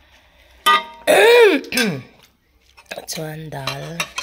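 A person's wordless voice: a loud, high exclamation that rises and falls in pitch about a second in, then a lower, held vocal sound near the end.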